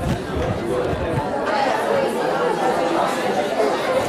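Many students talking at once in small-group discussions: a steady hubbub of overlapping voices filling a lecture hall.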